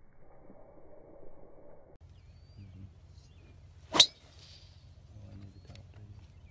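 A golf driver striking the ball on a full long-drive swing: one sharp, loud crack about four seconds in, over faint outdoor background noise.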